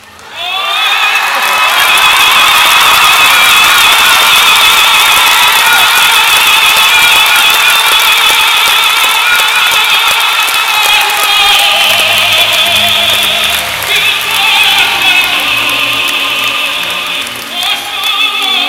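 Operatic singing with orchestral accompaniment, played loudly over an arena sound system: a high voice with wide vibrato that comes in strongly after a brief lull at the start.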